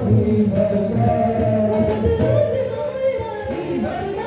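Live worship music: a man singing a devotional song through a microphone over instrumental accompaniment with a drum beat.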